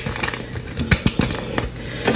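A paper yeast packet crinkling as dry yeast is shaken out of it into a plastic bowl, heard as an irregular run of small crackles and clicks.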